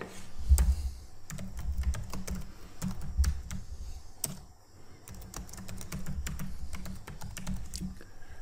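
Typing on a computer keyboard: irregular quick runs of sharp key clicks over a low knocking, with a brief pause a little after halfway.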